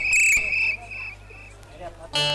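A high, shrill chirping tone: two loud chirps, then three fainter ones fading away.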